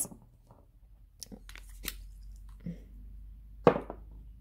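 Small clicks and scrapes of a leaf-shaped Kenzo perfume bottle's cap being taken off and handled, with one louder knock near the end.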